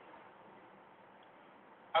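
Faint, steady road noise from inside a moving car, heard over a narrowband phone-quality line.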